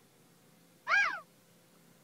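A single short pitched sound that rises and then falls in pitch, lasting about a third of a second, about a second in.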